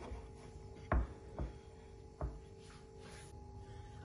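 A rolling pin being handled on a wooden cutting board: three soft knocks about a second, a second and a half and two and a quarter seconds in, over a faint steady hum.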